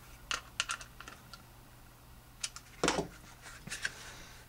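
Small sharp clicks and taps of a screwdriver on the belt-clip screws and of the stiff Kydex holster shell being handled, a quick run of them in the first second and more near the end, with one louder knock about three seconds in.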